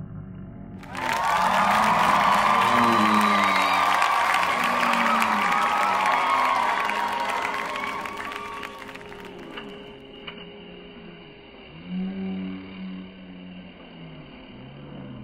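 Crowd cheering and clapping, loud for about eight seconds and then dying down, with music and voices under it.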